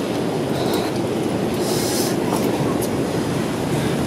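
Steady rain noise, an even hiss and patter with no break.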